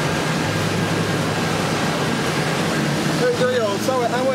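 Steady street noise from traffic and a stopped vehicle, with a low hum underneath. A person's voice starts about three seconds in.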